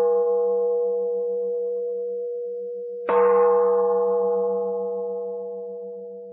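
Singing bowl struck about three seconds in, ringing with a wavering low hum beneath and slowly dying away; the ring of an earlier strike is still fading at the start.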